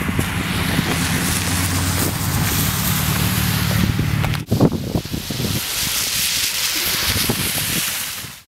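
Wind noise on the microphone with a steady low engine hum that stops abruptly about four and a half seconds in, followed by a few muffled knocks, then wind noise alone.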